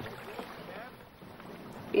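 Faint steady background noise with a few faint voice sounds, in a pause between lines of dialogue.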